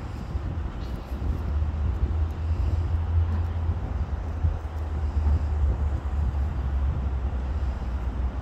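Wind buffeting the microphone, a steady low rumble with no distinct events standing out.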